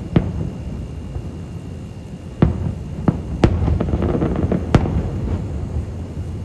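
Aerial fireworks shells bursting at a distance: about five sharp booms at uneven intervals, the closest together in the second half, over a continuous low rumble.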